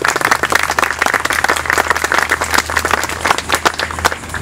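Audience applauding, many hands clapping, thinning out near the end.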